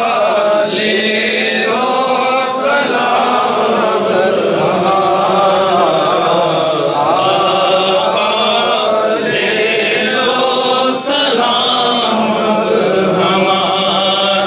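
Several men's voices chanting a devotional Urdu naat together into microphones, unaccompanied, in a steady continuous flow.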